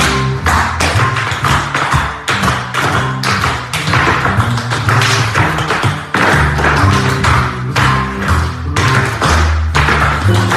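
Tap shoes striking a hard studio floor in quick rhythmic patterns over recorded music with a prominent bass line.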